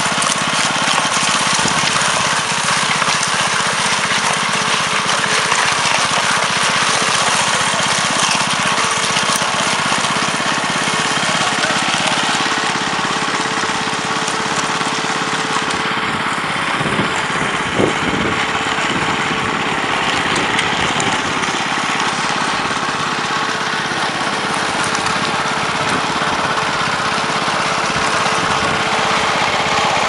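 Small petrol engine of a concrete power trowel running steadily at constant speed: a dense, even mechanical noise with a faint steady hum and one brief knock about eighteen seconds in.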